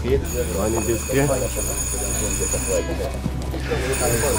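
A bell ringing steadily over the murmur of a waiting crowd, fading about three seconds in; the bell is rung to call racing pigeons in as they arrive at the loft.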